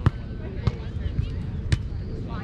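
Beach volleyball being passed and set between two players: three sharp slaps of hands and forearms on the ball within two seconds.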